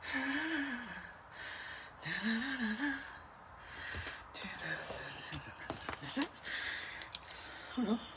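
A woman breathing hard to get her breath back after dancing, with two short breathy vocal sounds in the first three seconds. A few light clicks and taps follow in the second half.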